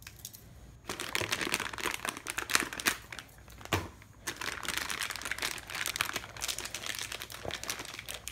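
Clear plastic bag crinkling as it is handled and pulled open, starting about a second in, with a sharp click a little before halfway.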